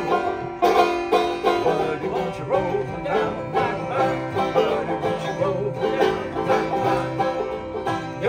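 Banjo and acoustic guitar playing an upbeat folk song together, with two men singing along.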